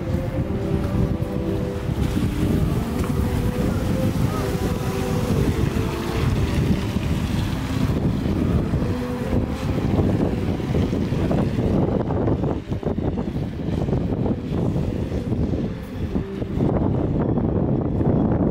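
Continuous low rumble of wind buffeting the microphone, mixed with the engine and tyre noise of cars on a wet street, one passing close by about halfway through. Faint music with a few held notes fades out in the first several seconds.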